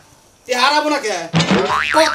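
After a brief lull, a few words of speech, then near the end a comic 'boing' sound effect, a quick rising whistle-like glide.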